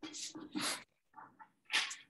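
Short, breathy human voice sounds in three brief bursts, heard through a video call's audio.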